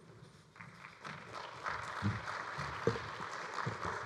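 An audience applauding, the clapping building up about a second in, with a few footsteps thumping on the stage.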